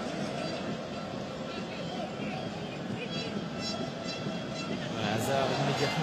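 Stadium crowd at a football match: a steady din of many voices that swells near the end.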